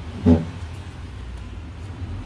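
A short burst of laughter just after the start, followed by a steady low background rumble in the room.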